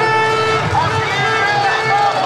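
Street-march crowd noise: many voices calling and talking over a continuous din, with a held steady tone that stops about half a second in.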